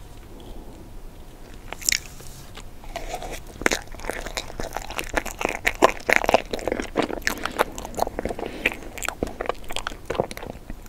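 Close-miked eating of ice cream cake: crunchy, crackly bites and chewing that start about three seconds in and run on in dense, irregular clicks.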